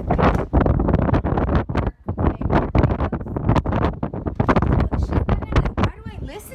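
Wind buffeting the phone's microphone in loud, uneven gusts, with a brief lull about two seconds in.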